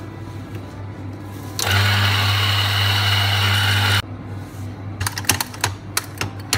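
Electric espresso coffee grinder running for about two and a half seconds, starting and stopping abruptly, a steady motor hum under the noise of beans being ground into a portafilter. A few sharp clicks and knocks follow near the end.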